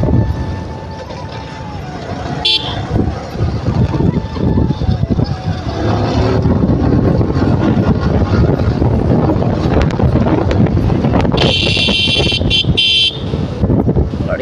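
Motorcycle riding along, its engine and road and wind rumble steady, with a single short horn toot about two and a half seconds in and a run of several quick horn beeps near the end.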